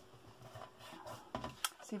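Card stock being handled on a cutting mat: faint rustling, then a few short taps and a paper rustle about a second and a half in as the assembled card panel is picked up and turned over.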